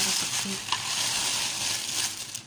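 Thin plastic shopping bag rustling and crinkling continuously as hands rummage through it right at the microphone.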